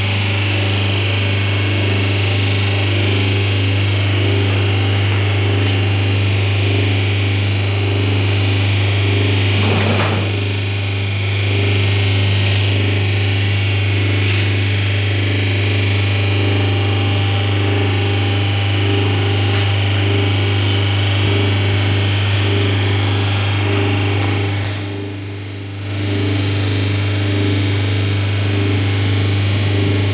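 Electric motor of a paper plate making machine running with a steady, loud hum and a pulsing drone above it, dipping briefly once late on.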